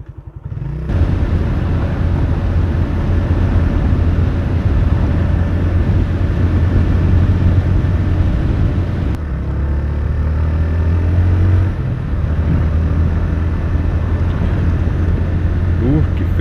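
Motorcycle engine ticking over at idle, then pulling away about a second in and running under load with wind and road noise on the microphone. The engine pitch rises from about nine seconds in, dips briefly near twelve seconds as it changes gear, then runs on steadily.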